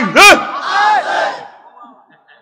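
A man's voice shouting the end of a phrase in a high, strained pitch through a microphone and loudspeakers, then a quieter drawn-out tail that dies away after about a second and a half.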